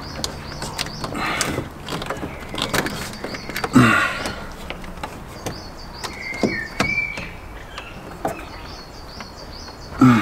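Scattered clicks, knocks and scrapes of plastic and metal parts being handled as an induction kit's cone air filter and intake are fitted in a car's engine bay, with a louder thump about four seconds in. The engine is off.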